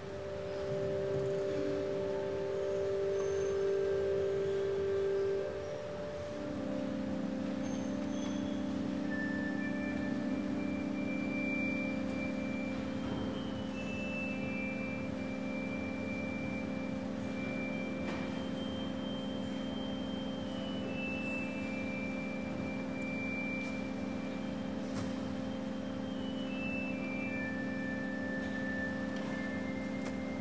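Organ playing processional music: sustained low chords, shifting to a new held chord about six seconds in, with a high melody of held notes moving step by step above them.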